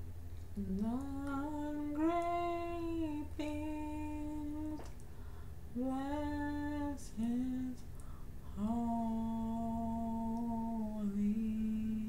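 A woman singing solo and unaccompanied, slow phrases of long held notes without clear words, the longest nearly three seconds late on.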